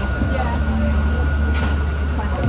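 A steady low engine rumble from a vehicle running close by, with faint voices in the background.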